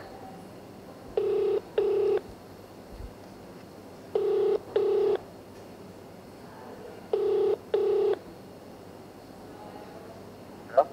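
Telephone ringback tone from a smartphone's loudspeaker: a double ring, two short beeps, sounding three times about three seconds apart while the call has not yet been answered.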